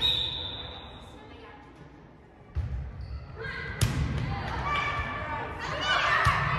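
A volleyball referee's whistle blast at the start, fading over about a second in the gym's echo. Then come thumps of a volleyball bouncing, a second short whistle, and a sharp smack of the ball being hit just before the four-second mark.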